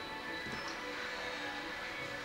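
Background music with steady, held tones.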